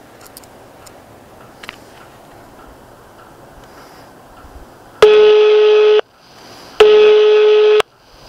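Telephone ringback tone on an outgoing call: after faint line hiss with a few clicks, two steady rings of about a second each, starting about five seconds in, separated by a short gap.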